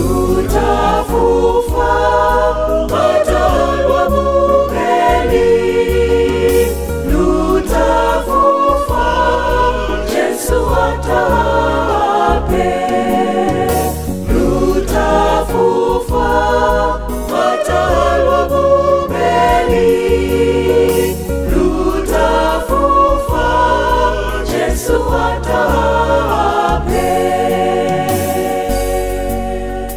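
A mixed choir of men and women singing a gospel song in several-part harmony over a bass line.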